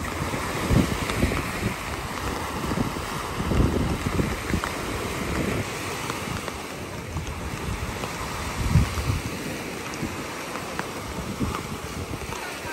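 Wind gusting on the microphone with low rumbles, over the steady wash of small waves breaking on a sandy beach.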